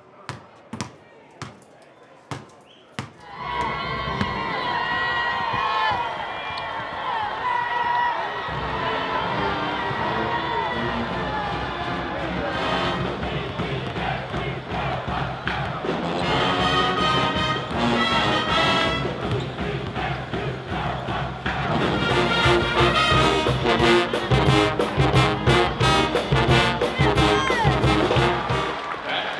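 A few single basketball bounces as a ball is dribbled. From about three seconds in, a brass pep band with drums plays loudly over arena crowd noise, with balls bouncing on the court.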